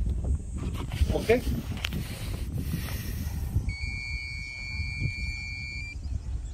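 Uneven low rumble of wind on the microphone outdoors. About two-thirds of the way through, a steady high-pitched tone sets in and holds for about two seconds.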